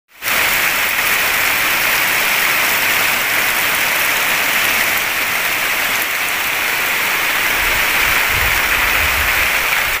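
Heavy rain falling steadily on the roof, leaves and ground: an even, loud hiss, with water streaming off the roof eaves. A low rumble joins in near the end.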